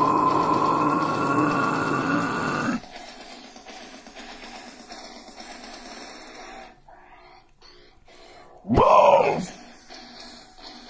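Harsh deathcore scream held on one pitch over the backing track, cutting off suddenly about three seconds in. Quieter instrumental backing follows, with a short growled shout about nine seconds in.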